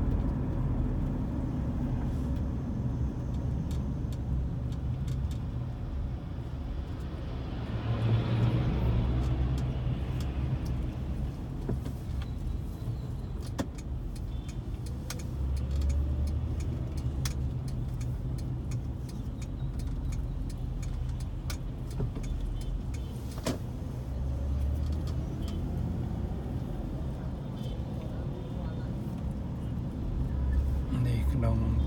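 Steady low rumble of a car's engine and tyres while driving along a town street, with a louder swell of passing traffic about eight seconds in.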